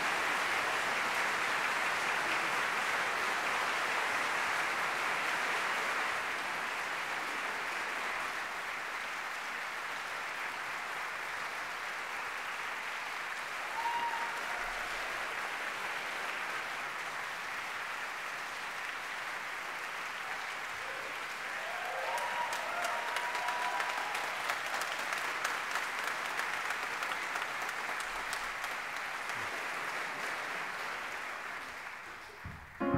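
Audience applauding in a concert hall, loudest for the first six seconds, then easing and swelling again about twenty-two seconds in.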